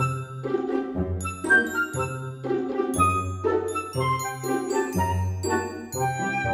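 Background music: short high ringing notes over a bass line that moves to a new note about once a second, with chords pulsing about twice a second.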